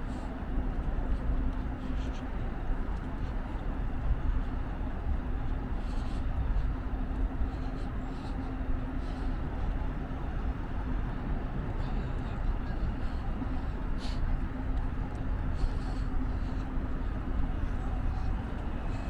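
City street ambience: a steady rumble of traffic with a constant low hum, with indistinct voices of passing pedestrians.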